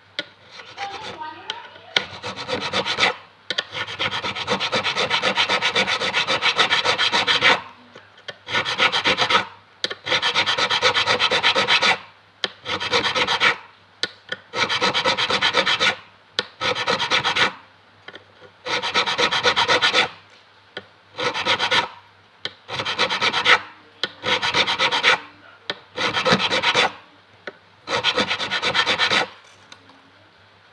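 Fret file rasping across a guitar fret, quick back-and-forth strokes in runs of one to three seconds with short pauses between, the longest run about four seconds in: the frets being crowned after leveling.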